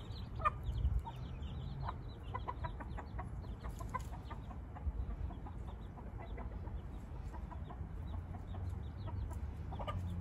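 Baby chicks peeping continuously, many short high cheeps overlapping, over a steady low rumble.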